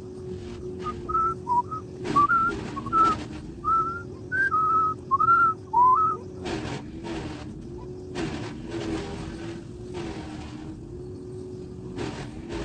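A person whistling a quick string of short, chirpy notes for the first few seconds over a steady low hum. Several brief rushing bursts of noise follow, each bending the pitch of the hum.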